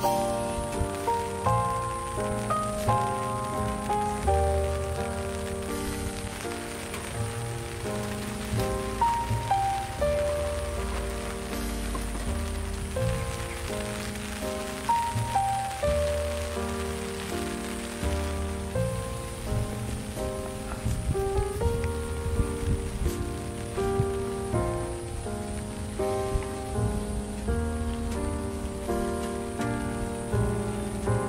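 Soft instrumental background music, a gentle melody of distinct notes, over a steady hiss of rain falling on a surface.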